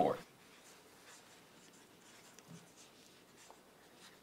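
Dry-erase markers writing on small whiteboards, faint and irregular strokes.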